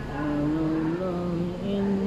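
A man chanting Quran recitation in long, held melodic notes, the pitch stepping up a little partway through.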